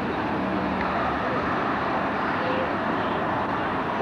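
Steady outdoor background noise with no distinct events, a continuous even rush on the camcorder microphone high above a town with roads and car parks.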